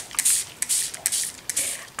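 Plastic trigger spray bottle squeezed again and again, giving about four short spritzes of hiss in quick succession.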